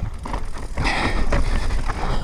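Mountain bike riding fast down a rocky singletrack: tyres crunching and skittering over loose stones, the bike rattling, over a steady low rumble, with a brief louder hiss about a second in.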